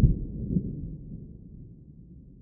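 Low rumbling tail of a logo-reveal sound effect fading away, with a soft thud at the start and another about half a second in.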